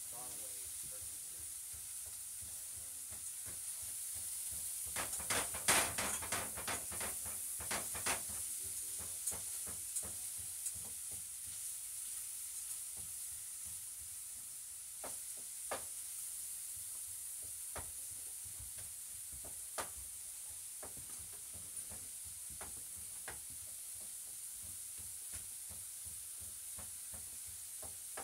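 Food sizzling steadily in a frying pan, with a run of sharp utensil clicks and scrapes against the pan about five to eight seconds in and occasional single clicks after.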